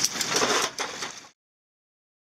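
Boat engine running under steady wind hiss, with a few sharp clicks and rattles from parachute lines and metal clips being handled. The sound cuts off suddenly to dead silence just over a second in.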